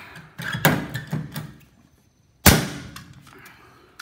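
Hand pop-rivet tool worked with a few squeezes of its handles in the first second or so, then one sharp, loud crack about two and a half seconds in as the rivet's mandrel snaps off and the rivet sets in the sheet-metal floor.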